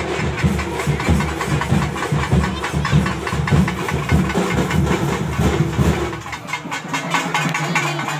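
Rapid, continuous festival drumming with a dense, driving beat. The deep drum strokes drop away about six seconds in.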